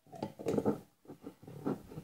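Irregular small knocks, clicks and rubbing noises, a run of short bursts, as things are handled on a kitchen counter, with a jar and its plastic lid among them.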